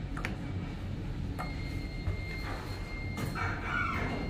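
Hitachi elevator car: a click as the door-close button is pressed, then the car doors slide shut over a steady low hum. A faint steady high tone starts about a second and a half in, and there is a louder noisy rush near the end as the doors close.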